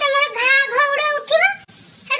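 A girl's voice talking in a very high pitch, breaking off about a second and a half in.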